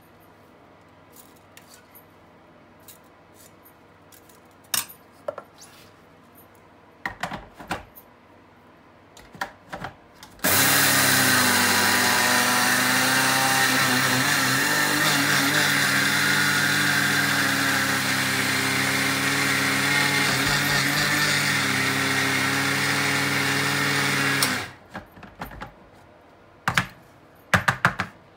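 Small electric grinder running steadily for about fourteen seconds, grinding rice into flour. The motor starts suddenly about ten seconds in and cuts off near the end, with light clicks and knocks of the jar and rice being handled before and after.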